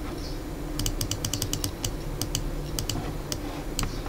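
Sharp clicking at a computer: a quick run of about ten clicks about a second in, then a few scattered single clicks, over a low steady hum.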